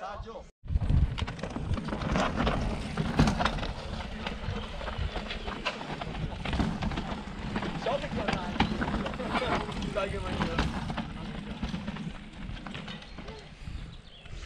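Indistinct voices of people talking in the background over an uneven low rumble of wind on the microphone.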